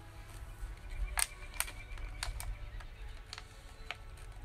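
A handful of sharp, irregular clicks from a plastic water-bottle flying tube being handled, over a steady low rumble of wind on the microphone.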